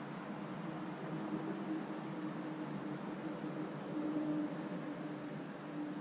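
Steady low hiss of room noise with faint gulps as a glass of beer is downed in one go.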